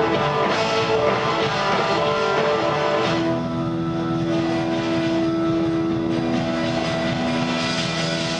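Electric guitar played live through Marshall amplifiers: a run of notes, then one long sustained note held from about three seconds in until near the end.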